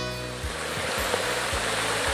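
Muddy floodwater rushing down a paved street, a steady dense hiss of water as a foot pushes into the current. Background music's bass and beat run underneath.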